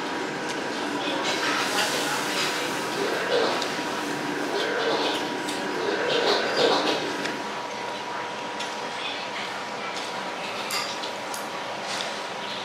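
Restaurant dining-room clatter: scattered clinks of dishes and cutlery over indistinct background voices, with a faint steady whine underneath.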